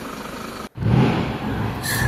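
Diesel pickup engines running. First a Toyota Hilux diesel idles steadily. After an abrupt cut to silence about two-thirds of a second in, a Ford Ranger XLT diesel pickup's engine runs louder as the truck rolls forward.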